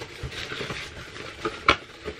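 Cardboard advent calendar box being handled and its lid flaps folded shut: papery rustling and scraping, with a sharp cardboard knock a little before the end.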